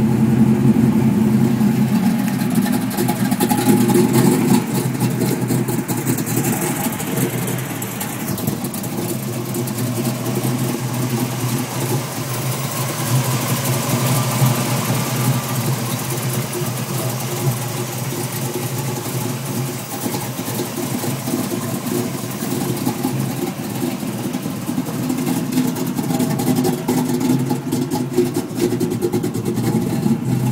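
Chevrolet Camaro V8 engine idling steadily just after start-up, a little louder for the first few seconds and then settling to an even idle.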